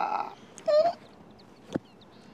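A man's breathy, open-mouthed laugh that trails off within the first moments, followed by a brief pitched vocal sound and a faint click near the end.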